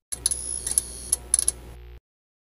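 Glitch-style outro sound effect: a thin high electronic whine broken by a string of sharp digital clicks and stutters, over a low hum, cutting off abruptly at the end.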